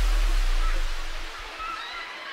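Steady hiss of heavy rain, with a deep low rumble underneath that breaks up and dies away about a second and a half in.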